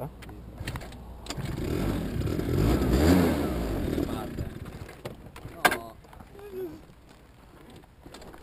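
A motor vehicle's engine swells over about three seconds and then fades, followed by a single sharp click.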